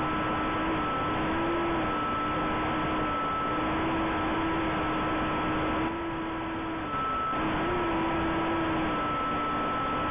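JJRC H6C micro quadcopter's motors and propellers heard through its own onboard camera microphone: a steady buzz over hiss, its pitch wavering slightly as the throttle changes. About six seconds in it drops a little in level for about a second.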